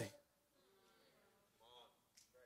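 Near silence: room tone, with a very faint voice briefly near the end.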